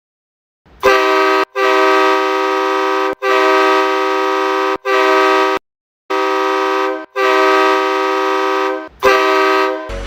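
Hockey goal horn, a multi-note air horn sounding a loud chord in seven blasts with short breaks between them. The longest blasts last about a second and a half.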